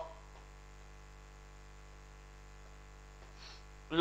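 Faint, steady electrical hum, a low drone of several even tones, with nothing else to be heard.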